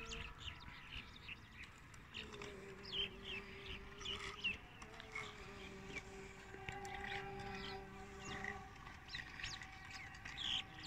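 Faint birds chirping here and there, with a faint steady hum that comes in about two seconds in and fades near the end.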